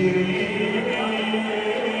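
Many men's voices chanting together in long, held notes.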